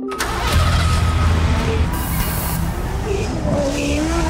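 Car engine sound effects mixed with music in a show's animated title sequence, starting abruptly with a deep engine rumble. A brief whoosh comes about two seconds in, and the engine pitch rises near the end.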